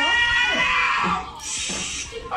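A long, drawn-out meow-like cry that rises and falls in pitch and lasts a little over a second, followed near the end by a short breathy noise.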